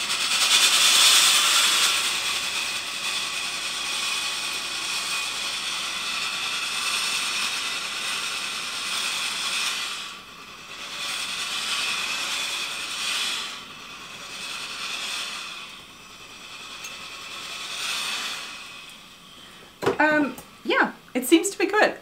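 Tefal Express Anti Calc steam generator iron releasing steam in vertical steaming mode: a steady hiss for the first ten seconds, then three shorter puffs of steam, trailing off before speech near the end.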